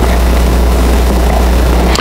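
A steady low hum with an even hiss over it, unchanging throughout.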